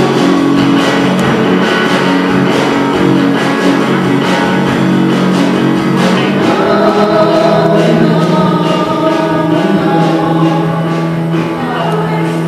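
A live band playing: two women singing long held notes together over a strummed acoustic guitar and electric bass.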